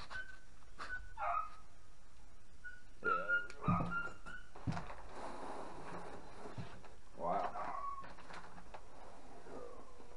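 A dog barking a few times, about three seconds in and again around seven seconds, over the rustle of plastic wrapping and a few knocks as a landing net is pulled from its box.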